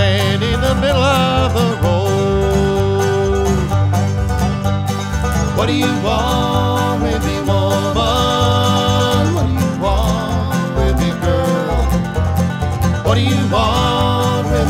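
Bluegrass band playing an instrumental break: banjo and guitar over a steady bass beat, with a lead melody line that slides in pitch.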